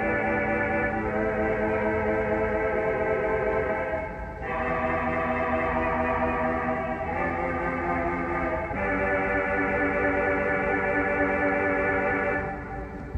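1926 Estey pipe organ's Vox Humana reed stop with the tremolo on, playing a slow succession of held chords with a wavering tone. The chords change every couple of seconds, with a brief break about four seconds in.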